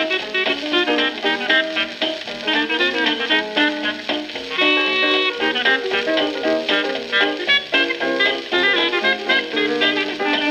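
Piano, clarinet and drums trio playing hot jazz in a busy run of quick notes, reproduced from a 1928 Victor 78 rpm shellac record on a turntable. A single held note sounds about halfway through.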